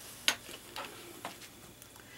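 A pencil set down on a tabletop: one sharp click about a third of a second in, then a few faint ticks against quiet room tone.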